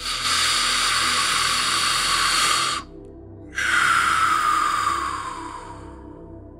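Two long breaths over a soft ambient music bed. The first is steady and lasts nearly three seconds. After a short pause, the second falls in pitch and fades away.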